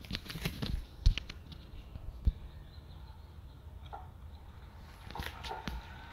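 Socket wrench and hands working on the motorcycle's bolts: scattered light clicks and knocks, with a sharper knock about a second in and another just past two seconds.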